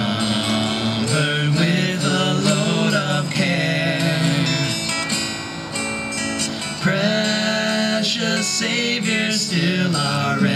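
Two acoustic guitars strummed together as accompaniment, with a man's voice singing a melody over them.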